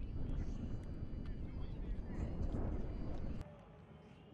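Wind rumbling on the microphone over an open practice field, with faint voices of players and coaches underneath. The rumble cuts off suddenly about three and a half seconds in, leaving only faint background voices.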